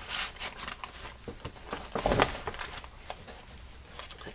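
Paper and card rustling and tapping as the pages, fold-outs and photo mats of a handmade paper bag scrapbook album are handled and turned, with a louder soft knock about two seconds in.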